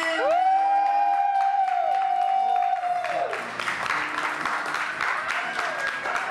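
Music with a long held, swooping note for about three seconds, then a crowd applauding and cheering.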